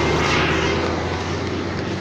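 Steady motor-vehicle engine rumble with road noise, fading slightly over the two seconds.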